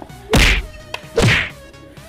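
Two punch sound effects, sharp hits about a second apart, as used in a staged fistfight.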